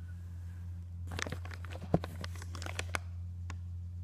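Handling noise: quick crackles and clicks as a plastic fecal egg counting slide and the recording phone are moved about, with one sharp click about two seconds in, over a steady low hum.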